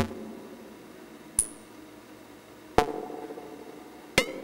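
Eurorack modular synthesizer playing short percussive hits made by ring modulation (four-quadrant multiplication) in the bipolar VCA of an Abstract Data Wave Boss. There are three sharp hits about 1.4 s apart, each ringing out briefly. The middle one is a high-pitched ping; the other two have a lower ring.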